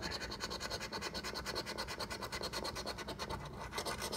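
A coin scratching the coating off a Cash Blast scratch-off lottery ticket in rapid, even strokes, about ten a second.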